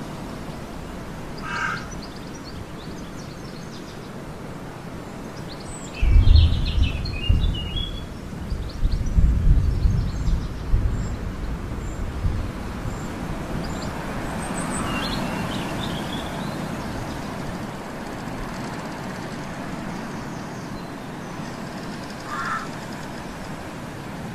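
Steady background noise with a few scattered bird calls, and a loud low rumble from about six to thirteen seconds in.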